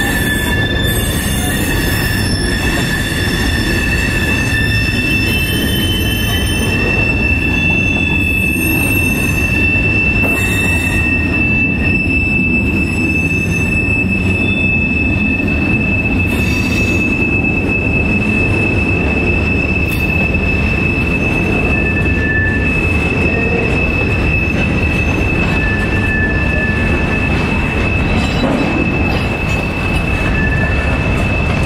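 Freight cars of a slow-moving train, boxcars and tank cars, rolling past with a steady low rumble of wheels on rail. A high steady squeal from the wheels holds through most of it, with shorter squeals coming and going.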